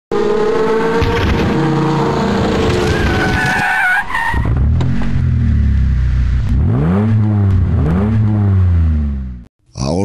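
Car engines and tyres as intro sound effects: a high tyre squeal over engine noise for the first few seconds, then deep engine revs that rise and fall twice, cut off suddenly just before the end.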